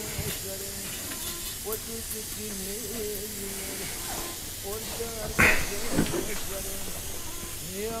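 Kettle steaming on a hot wood-burning stove, a steady hiss with a wavering low hum beneath it. A single knock about five and a half seconds in.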